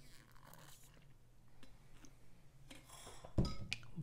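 Water being sipped through a drinking straw, the straw making a loud sucking noise. A low thump and a few clicks follow near the end.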